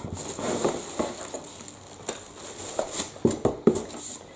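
Rustling and scraping of packaging as hands rummage inside an open cardboard box, with a few light knocks a little past the three-second mark.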